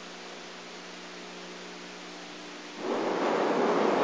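Hiss with a steady electrical hum from old videotape audio. About three seconds in, a louder rushing noise with no pitch comes in.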